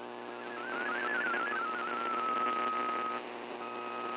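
MFSK32 digital text signal from a VOA Radiogram shortwave broadcast, received in AM over a bed of static hiss: a single tone hopping quickly between close pitches. About two seconds in it settles into one steady held tone, which drops out briefly and comes back near the end.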